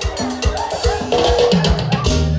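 Live dance band playing: a drum kit keeps a steady beat of bass drum and snare under held melodic notes, and a deep bass line comes in near the end.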